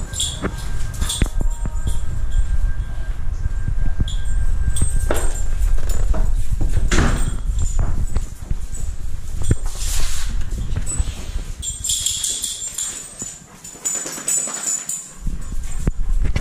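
Dogs moving about indoors, with scattered clicks and knocks, over heavy rumbling handling noise from a moving camera.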